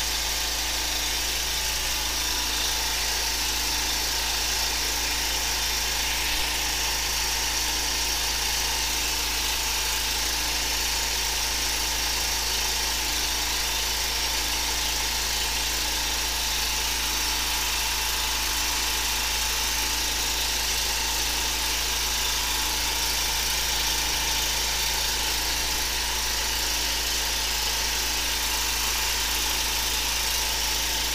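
High-pressure sewer jetter running steadily: the engine-driven pump's even hum with a slow pulse about once a second, over a steady hiss as the jet hose flushes the drain.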